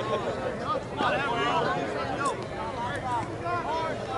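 Indistinct overlapping voices of players and onlookers chattering and calling out, with no words clear.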